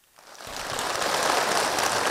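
Large crowd applauding: the clapping swells in over the first half-second and then goes on steadily.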